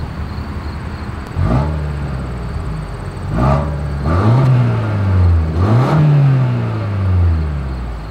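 2024 Toyota Grand Highlander's exhaust heard at the rear outlets: the engine idles, then is revved three times, about a second and a half in, near the middle and again shortly after. Each rev rises quickly and falls slowly back toward idle.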